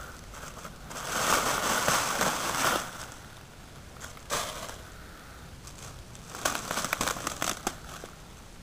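Black plastic trash bag crinkling and dry leaves and pine straw rustling as the bag is handled and pulled open: a rustle from about a second in, one sharp crackle about halfway through, then a run of crackles near the end.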